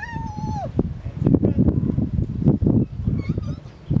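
Dolphin calling above the water: a squeaky whistle at the start that holds its pitch for about half a second and then drops, and a shorter call near the end, over a steady low rumble.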